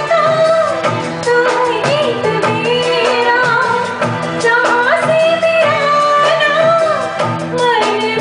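A woman singing a Bollywood song live into a microphone, her melody gliding and ornamented, over a band accompaniment with steady chords and drum strikes.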